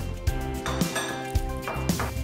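Ceramic bowls and metal spoons clinking as they are set down on a wooden table, over background music with a steady beat.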